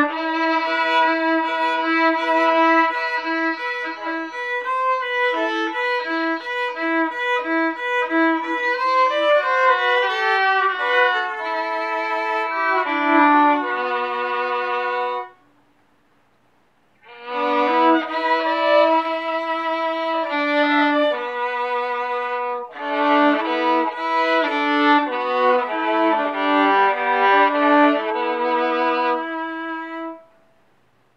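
Solo violin bowed: a phrase of repeated short notes and shifting lines that breaks off about halfway for a pause of a second or two, then a second phrase of quicker moving notes.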